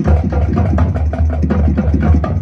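High school marching band playing, with a loud sustained low bass note and quick percussion strikes over it.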